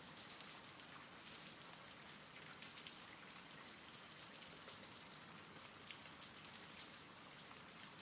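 Faint, steady recorded rain, an even hiss with a few louder drops ticking now and then.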